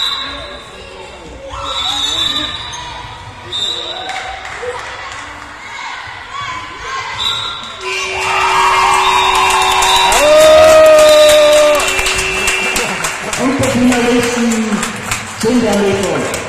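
Sports-hall game-clock horn sounding one long steady tone for about five seconds, starting about halfway through: the end-of-match signal. Young girls shriek and cheer over it, and a handball bounces on the hall floor beforehand.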